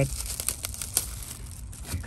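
Clear plastic sleeve crinkling and crackling as a new pair of Knipex pliers is slid out of it and the wrapper is handled.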